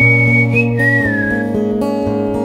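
Whistled melody over strummed acoustic guitar chords: one held high note that steps up briefly, then a lower note that slides down just after the middle.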